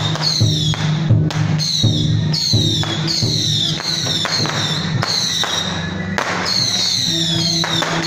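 Procession music with percussion struck in a steady beat, a little under two strokes a second, each stroke followed by a high, falling ring, over a steady low tone.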